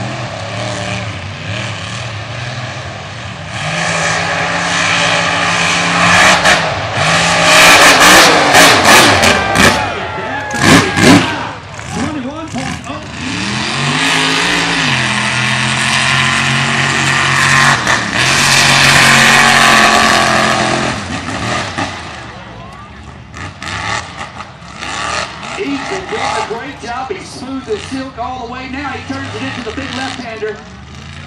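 Mega mud truck's engine revving hard at full throttle as it races the dirt course: loudest from about four to eleven seconds in and again from about sixteen to twenty-one seconds, with the revs dipping and climbing around fourteen seconds. It grows quieter over the last several seconds as the truck moves away.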